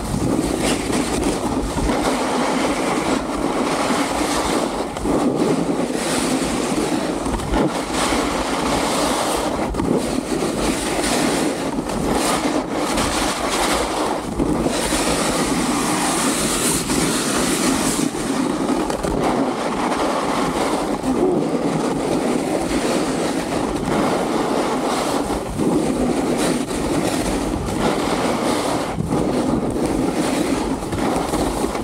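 Snowboard running downhill over groomed, packed snow: a continuous rough scraping rush of the board's base and edges on the snow, with scattered short knocks as it rides over bumps.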